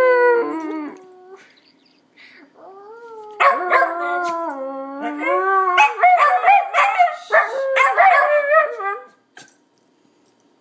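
Two West Highland White Terriers howling together in long, wavering howls. The first howl trails off in the first second and a half, and after a short pause they start again. Toward the end the howls break into short, choppy yips and barks before stopping about nine seconds in.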